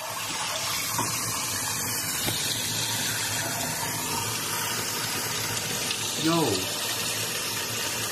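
Kitchen tap running steadily, its stream splashing onto ice in a glass bowl.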